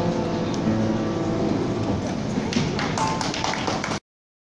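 Upright piano playing the closing notes of a slow ballad; the held notes ring on and fade. In the last second and a half a handful of sharp taps or claps come in over the fading piano.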